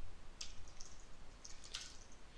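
Computer keyboard typing: a few scattered, light key clicks.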